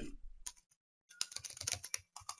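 Computer keyboard being typed on: a quick, uneven run of key clicks that starts about a second in.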